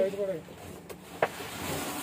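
A voice briefly at the start, then a soft rustling hiss as a plastic tarpaulin cover is handled and lifted, with a single sharp click just over a second in.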